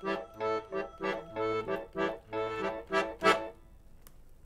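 Piano accordion playing short, detached chords about two a second, with low bass notes falling under every other chord. The playing stops shortly before the end.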